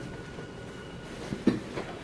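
Steady background hum of a lecture hall, with one short sharp sound about one and a half seconds in.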